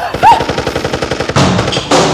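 A brief loud yelp, then a rapid burst of automatic gunfire, about a dozen shots a second, lasting about a second.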